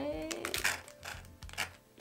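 Faint background music under about half a dozen short, sharp clicks and crinkles of a plastic candy wrapper being handled as a licorice twist is pulled out.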